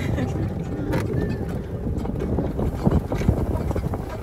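Steady low rumble of an open-sided cart driving over grass, with wind buffeting the microphone.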